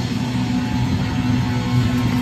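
Live rock band playing loud through a PA: electric guitars and bass holding steady sustained chords.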